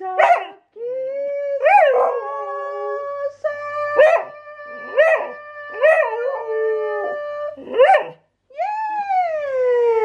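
Old border collie howling ('singing'): long held notes broken by sharp yips about once a second, then one long howl that falls steadily in pitch near the end.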